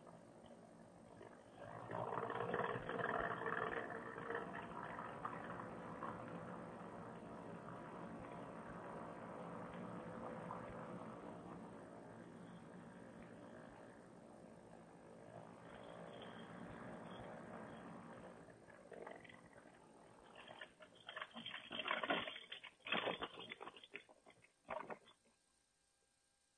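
Paramotor trike engine running at low throttle on the final approach, heard faintly with a steady hum. About 20 seconds in come a run of short bumps and rattles as the trike touches down and rolls over the grass.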